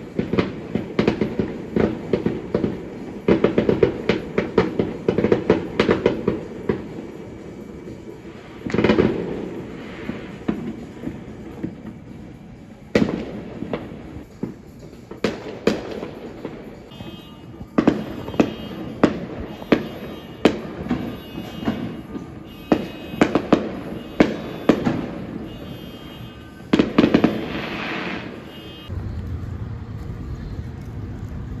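Aerial fireworks going off: a rapid run of crackling pops for the first few seconds, then a string of separate sharp bangs and short crackling clusters.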